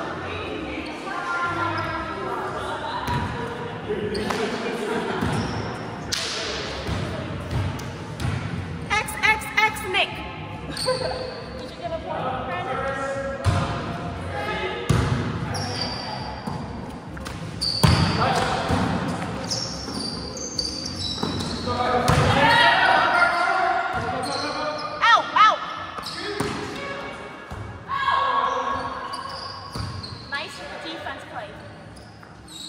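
Volleyball being struck and bouncing on a gym floor several times, mixed with players' voices calling and chattering, echoing in a large hall.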